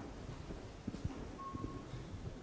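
Faint, irregular taps of a laptop keyboard as a command is typed into a terminal, with a short steady beep a little after halfway.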